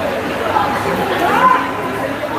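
Several people chatting and calling to one another in a large, echoing indoor hall, with a short rising sound, the loudest moment, about one and a half seconds in.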